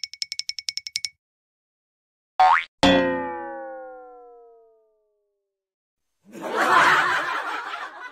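Comedy sound effects. The first second is a rapid run of high ticking dings. About two and a half seconds in comes a short swish, then a cartoon boing whose pitch falls as it dies away over about two seconds. About six seconds in, a loud burst of rough noise lasts to the end.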